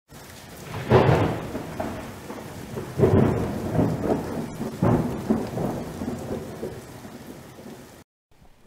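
Steady rain with three rolls of thunder, about one, three and five seconds in, each starting suddenly and dying away.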